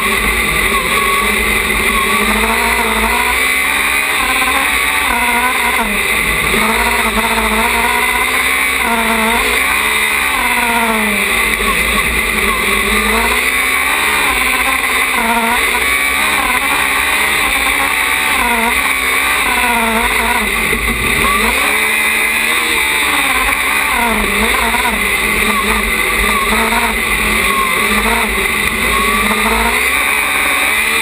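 Engine of a small open-wheel race car heard onboard while driving, its revs rising and falling again and again through the corners, every second or two.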